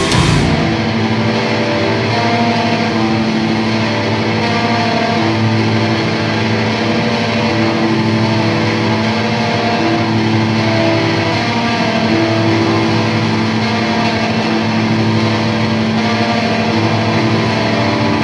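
Heavily distorted electric guitar and bass playing a slow, droning passage of held notes that change every second or two, with no drums.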